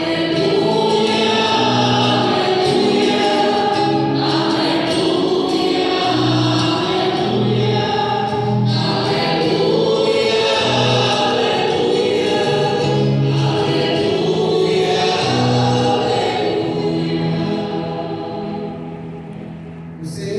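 Church choir and congregation singing the Gospel acclamation with instrumental accompaniment, dying away over the last few seconds.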